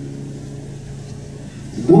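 Acoustic guitar notes ringing on and slowly fading between sung lines; a man's singing voice comes in near the end.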